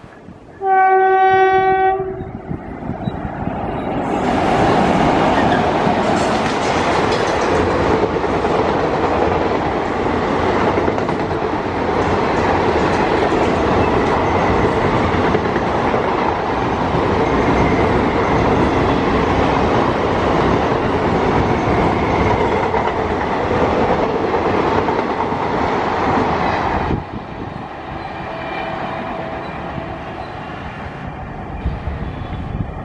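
A WAP-4 electric locomotive sounds one horn blast of about a second and a half, then it and its express coaches pass at speed. The wheels on the rails make a loud, steady rumble that lasts over twenty seconds and drops off abruptly near the end.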